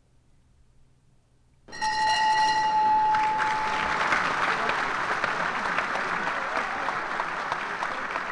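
Crowd applause, added as an outro sound effect, starts suddenly about two seconds in after a near-silent pause and keeps going. A steady high tone like a whistle rides on top of it for its first couple of seconds.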